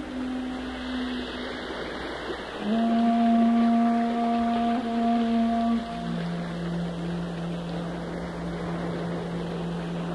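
Shakuhachi (Japanese bamboo flute) playing slow, long-held low notes: a louder note enters about three seconds in and steps down to a lower note near the six-second mark. A steady rushing background of natural sound runs underneath.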